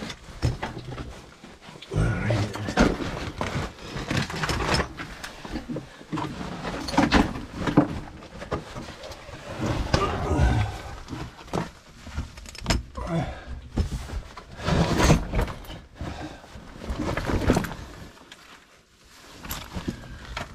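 A person crawling over rough lava rock: irregular scraping and shuffling of knee pads, clothing and gear against the rock, with scattered knocks.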